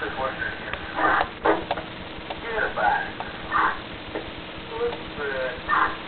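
Police radio chatter: short, indistinct voice transmissions over a steady hiss, as from a scanner.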